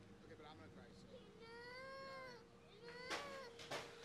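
A cat meows, ending in one long call that rises and falls, then two sharp knocks on a wooden door near the end.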